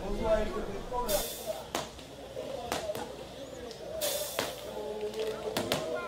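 Paintball markers firing in scattered sharp pops at irregular intervals, with two short hissing bursts of fire about a second and about four seconds in. Faint voices are heard underneath.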